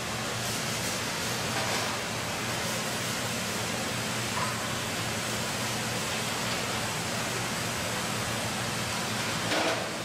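Steady rushing hiss of running water, with a faint low hum underneath.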